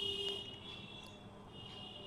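A high-pitched electronic buzzer tone from the Arduino coin-operated charging station, sounding as a coin is accepted and the system prompts for a charging port. It is steady, loudest at the start and fading, and comes back faintly near the end.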